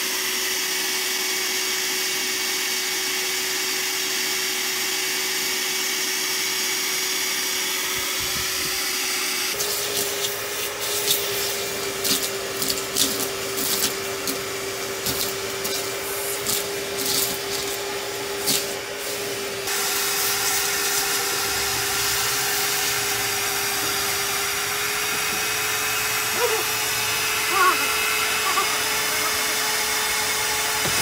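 Shop vacuum running steadily with its motor hum as it cleans a rusty truck cab floor. For about ten seconds in the middle, a run of rapid clicks and rattles sounds as grit, rust flakes and debris are sucked up the hose.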